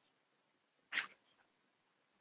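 A single short breath from the presenter, a brief airy sound about a second in, in an otherwise near-silent pause.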